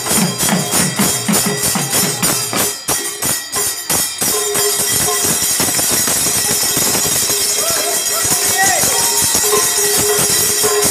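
Mridang barrel drums played in a fast, even rhythm over a continuous jingling metallic wash. For about the first four seconds the drum strokes stand out with a deep ringing tone; after that they sink into the steady jingling.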